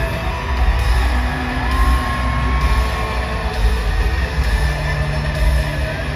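Loud live band music played through a stadium PA, with a heavy pulsing bass beat and a held tone over it early on.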